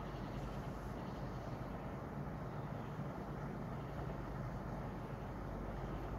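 Steady low hum and hiss of room noise, unchanging throughout, with no distinct knocks or clicks.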